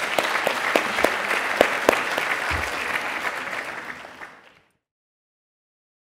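Audience applauding, a dense patter of many hands clapping that fades and cuts off to silence about four and a half seconds in.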